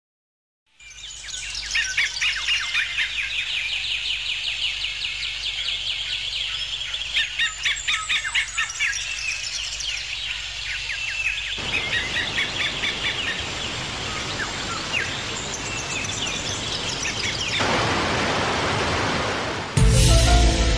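Birds chirping in quick, dense runs of high calls over a bed of outdoor ambient noise; about halfway through, a fuller rush of noise comes in under the chirping.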